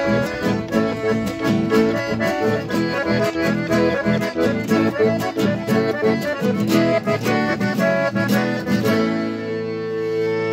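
Two button accordions playing a tune together over strummed acoustic guitar. About nine seconds in, the strumming stops and the accordions hold a long chord.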